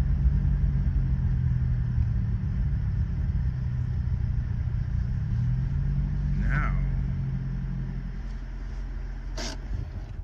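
In-cabin engine and road rumble of a 1990 Nissan Pulsar GTi-R's turbocharged four-cylinder, driving at low speed. The engine note fades over the last couple of seconds as the car slows toward a stop, and there is a short sharp click near the end.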